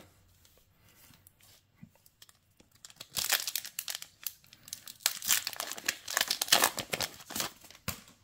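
A Yu-Gi-Oh booster pack wrapper being torn open and crinkled by hand: a rapid, crackling rustle that starts about three seconds in, after a near-quiet start.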